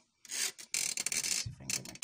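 Close-up handling noise from a hand-held camera being moved: rubbing and scraping against the microphone in a few separate strokes, then a quick run of clicks in the second half.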